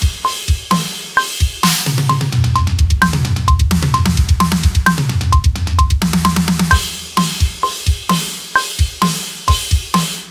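Drum kit playing a metalcore groove and a fraction fill at 130 BPM over a metronome click. The click marks each beat, with a higher click every fourth. Kick, snare and cymbals play around it, with a dense run of tom hits through the middle before the groove returns.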